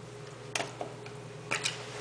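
Four light, sharp clicks, two close together near the end, as small food-dye bottles are handled over an open toilet tank.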